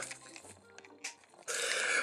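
Hard plastic toy parts being handled and pried apart by hand, with a few faint clicks, then a short scraping hiss about one and a half seconds in as the back section is pulled open.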